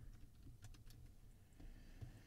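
Faint computer keyboard keystrokes, a few scattered key clicks, as a password is typed in.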